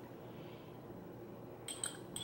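Faint room tone, then near the end two or three light clinks of a metal fork against a small glass jar.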